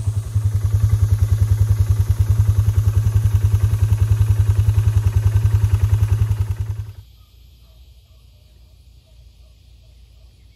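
Four-wheeler (ATV) engine idling with an even, fast pulse, fading out about seven seconds in. Faint chirping follows.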